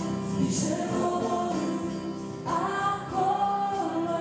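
A woman and a man singing a worship song together to electronic keyboard accompaniment. A new sung phrase begins about two and a half seconds in.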